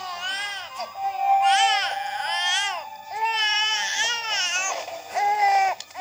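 A baby crying in four wailing bouts with short breaths between, over soft held music, played from a VHS trailer through a television's speaker.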